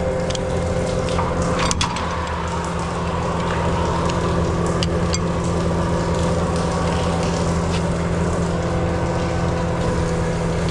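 Sewer jetter truck's engine and high-pressure water pump running steadily, with the jet spraying water down in the manhole while the hose is pulled back up. A few sharp clicks or knocks sound over the drone, the loudest about two seconds in.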